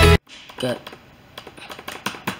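Background music cuts off abruptly just after the start. A few light, irregular clicks of laptop keys follow.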